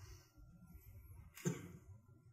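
Quiet room tone with a faint low hum, broken by one short, sharp sound about one and a half seconds in.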